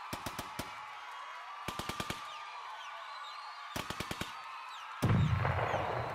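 Automatic gunfire in three short bursts of about five rapid shots each, spaced about two seconds apart. Near the end a loud, low swell of music comes in, with faint bird chirps in the background.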